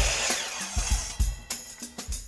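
A power miter saw cutting wood, its whine falling as the blade spins down in the first half second, over background music with a drum beat.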